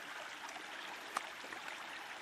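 Steady rush of flowing brook water, with one short click just after a second in.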